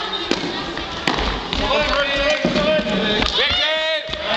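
Indoor youth baseball game: two sharp knocks about a second apart, then young players shouting, with one long rising and falling call just before the end.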